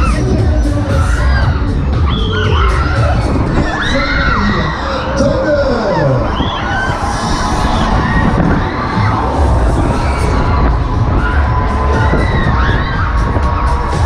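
Riders on a spinning Break Dance fairground ride screaming and shouting, many short rising-and-falling cries overlapping, over loud fairground music and a steady low rumble.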